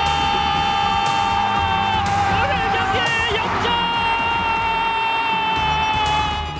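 A football TV commentator's drawn-out goal shout. One long held cry breaks off about three seconds in and is followed by a second held cry, slightly higher.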